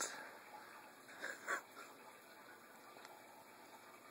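A mostly quiet room, with two brief muffled sounds close together about a second and a half in from a person with a mouthful of dry saltine crackers.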